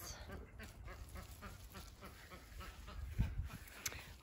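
Faint, repeated calls of domestic fowl, with a low bump a little after three seconds in.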